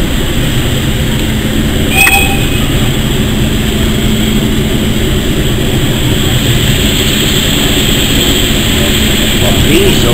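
Railway locomotive moving slowly alongside a platform, a steady low rumble with one brief, sharp metallic squeal about two seconds in.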